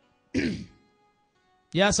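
A man clears his throat once into a microphone: a short rasp that falls in pitch, about a third of a second in.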